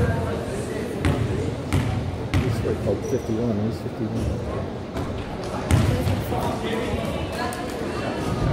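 A basketball bounced on a hardwood gym floor four times in the first couple of seconds, about one bounce every two-thirds of a second, ringing in the gym. A few more thuds come later, over the steady chatter of spectators.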